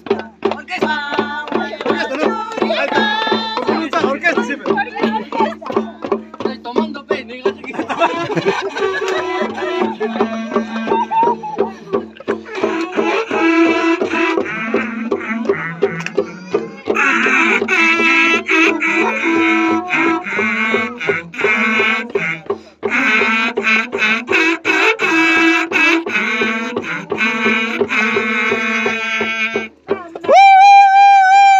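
Women's voices singing a Santiago song in high voices, with small tinya hand drums beating a steady pulse about four strokes a second. A low steady tone runs underneath. The singing grows louder about halfway through.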